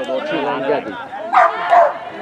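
Spectators' voices at the touchline, with one louder, sharp call from about one and a half seconds in.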